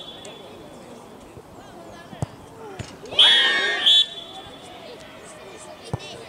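A football is struck once with a sharp thump about two seconds in. About a second later comes a loud burst of high-pitched shrieking and cheering from young girls, with a second short shriek near four seconds. Faint spectator voices run underneath.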